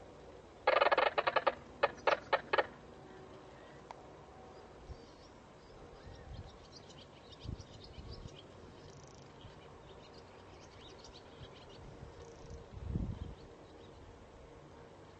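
A bird calling: a loud, rapid chattering run of notes about a second in, lasting about two seconds. Faint high chirping follows through the middle, with a low thump near the end.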